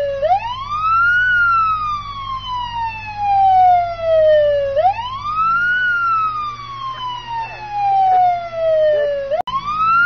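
Emergency-vehicle siren wailing. Each cycle rises quickly in pitch for about a second, then falls slowly for three to four seconds, repeating about every four and a half seconds over a steady low hum.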